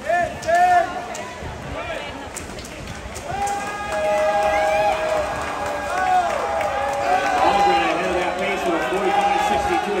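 Crowd of spectators at a swim race shouting and cheering, with many overlapping long drawn-out yells. A loud burst of shouts comes right at the start, and the cheering swells about three and a half seconds in and keeps up.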